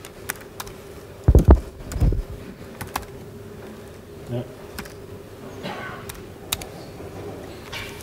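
Laptop keyboard keys pressed one at a time, sharp scattered clicks, over a steady low hum in the room. Two heavier dull thumps come about one and a half and two seconds in.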